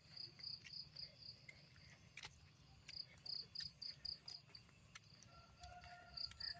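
Faint, high-pitched insect chirping in two short runs of evenly spaced pulses, about three to four a second.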